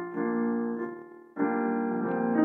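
Solo piano played by hand: a held chord rings and fades away almost to nothing, then a new chord is struck a little over a second in and rings on.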